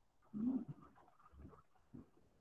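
A whiteboard eraser rubbing across the board in faint strokes, with a short low tone about half a second in.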